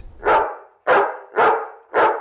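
Caged dogs in shelter kennels barking, four sharp barks about half a second apart.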